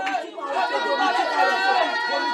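A congregation praying aloud all at once: many overlapping voices, with no single voice standing out.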